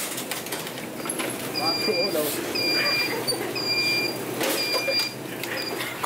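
Electric shopping cart's warning beeper giving short steady beeps about once a second, over chatter.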